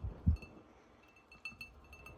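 A dull thump just after the start, then a few faint, light clinks.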